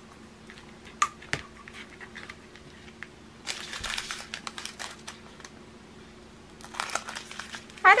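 Small plastic bags of diamond-painting drills crinkling as they are handled, in two spells, the first about halfway through and the second near the end. A few sharp light clicks come about a second in.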